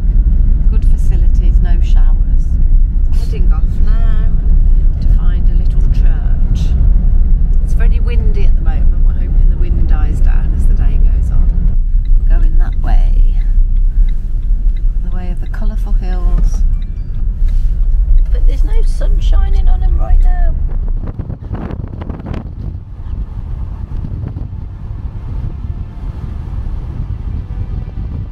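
Heavy, steady low rumble of engine and road noise heard from inside a moving camper van, with voices talking over it. The rumble falls away sharply about three-quarters of the way through.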